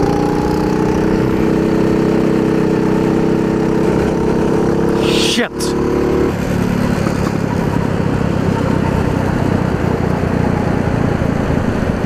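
Racing kart engine running hard at high revs, heard from on board with wind and road noise, its note steady and slowly rising. About five and a half seconds in the sound breaks off briefly, and afterwards the engine note sits lower and rougher.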